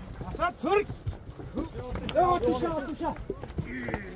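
Men's voices shouting short calls, two early and then a run of them in the middle, over the thudding of horses' hooves milling on dirt ground.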